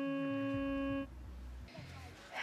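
A single steady, electronic-sounding tone with overtones, held without wavering and then cut off sharply about a second in, followed by a faint low rumble.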